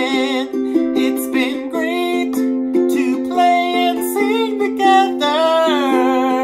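Ukulele strummed in steady chords, with a man's voice singing a wavering melody over it in several short phrases.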